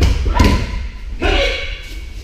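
Bodies thudding onto tatami mats as karate partners are thrown or taken down, with short shouts rising over the impacts twice, echoing in a large hall.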